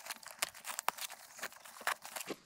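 A nylon MOLLE admin pouch being worked off a pack frame's webbing by hand: fabric and strap rustling with irregular sharp clicks, the loudest about halfway and just before the end.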